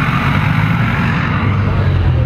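First-generation Mazda Miata's engine running at low speed as the car rolls slowly past at close range: a steady low hum that grows a little stronger near the end.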